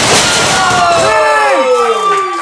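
A wrestler's body slamming down onto the ring mat: a sharp crash right at the start, followed by spectators yelling, one voice in a long falling shout.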